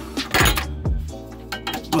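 Background music with a steady beat, with a few sharp metallic clinks from a 14 mm socket and ratchet being worked on a sway bar bushing bracket bolt.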